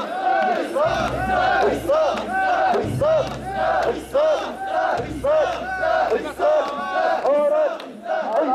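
A crowd of mikoshi bearers chanting together in a rhythmic call-and-shout as they carry the portable shrine, many male voices repeating a short rising-and-falling cry about twice a second.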